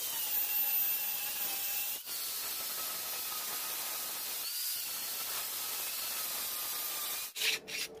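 Angle grinder with an abrasive cut-off disc cutting through a steel ring, a loud hiss over a motor whine that wavers in pitch as the disc bites. It breaks off briefly about two seconds in and stops about seven seconds in, followed by a few short scrapes.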